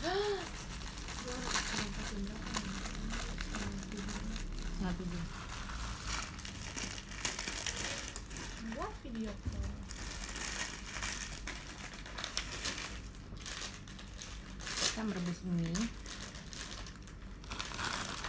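Food packaging rustling and crinkling in irregular bursts as it is handled, with a few brief voice fragments.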